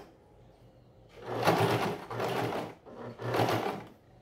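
Domestic electric sewing machine stitching in three short runs, each about a second long with brief stops between them, starting about a second in.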